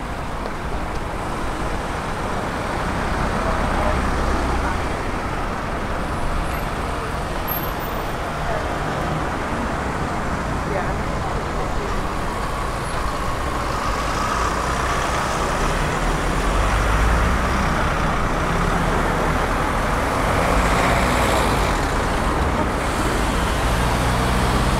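Road traffic on a town high street: cars and a van driving past, a steady rumble of engines and tyres that swells and fades as each vehicle goes by.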